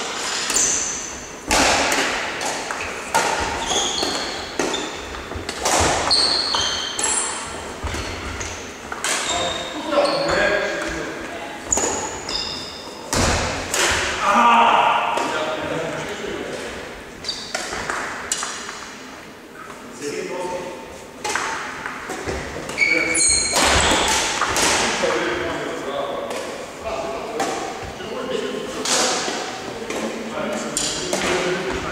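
Badminton rally: repeated sharp strikes of rackets on the shuttlecock and short high squeaks of court shoes on the wooden floor, echoing in a large sports hall, with players' voices.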